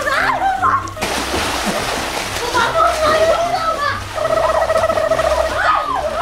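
Water splashing and churning as people swim and kick hard across a pool, with excited shrieks and voices near the start and end. Background music with a steady beat plays underneath.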